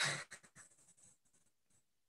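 A woman's short breathy laugh: a burst of breath at the start and a few quick puffs that fade within about half a second, then near silence.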